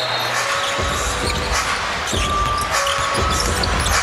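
Basketball dribbled on a hardwood court with repeated bounces, under the steady noise of an arena crowd.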